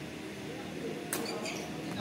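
Badminton racket striking the shuttlecock with a sharp crack about a second in, with sneakers squeaking on the court floor around it.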